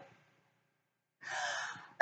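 A person's laugh fades out, and after about a second of silence there is a short, sharp intake of breath.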